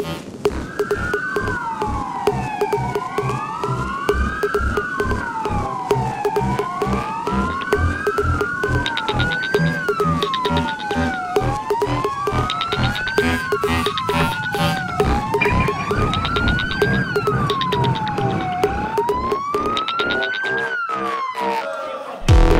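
Emergency-vehicle siren wailing, its pitch sweeping up and down about every two seconds. Two sirens overlap for the first half, then one carries on alone until it stops just before the end.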